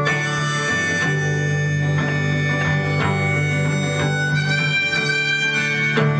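Harmonica playing long held notes, shifting to a lower note about four seconds in, over a steadily strummed acoustic guitar.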